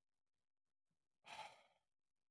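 A man sighing once in exasperation, a short breathy exhale about a second in, in otherwise near silence.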